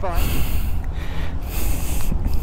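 Wind buffeting the microphone: a loud, unsteady low rumble with a hiss above it.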